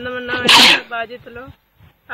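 A woman speaking Telugu, with a brief, loud hissing burst about half a second in that is louder than her voice.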